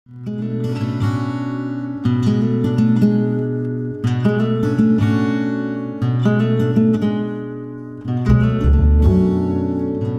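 Background music on acoustic guitar: strummed chords, a new chord about every two seconds, with a low bass coming in near the end.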